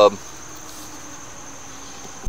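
Steady background hiss with a thin, constant high-pitched whine running under it.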